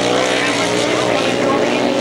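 Several grasstrack racing sidecar outfits running together at high revs under full racing power, a loud, steady engine note that wavers a little in pitch.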